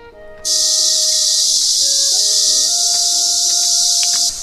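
A loud, steady, high-pitched hiss that starts abruptly about half a second in, over quiet background music.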